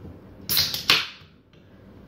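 A can of Coke being cracked open: two short, sharp hisses, about half a second and a second in.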